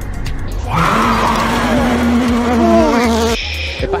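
Racing car engine buzzing at high, steady revs, starting about a second in, with a second engine note falling in pitch; it cuts off sharply just before the end.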